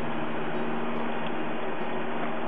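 Steady rushing noise, even and unbroken, with faint low sustained tones beneath it.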